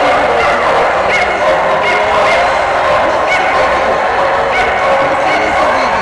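Many dogs barking and yipping at once, with short high yips recurring about once a second over a steady, dense din.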